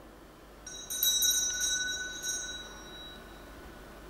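A bell struck several times in quick succession, its clear high ringing dying away over about two seconds.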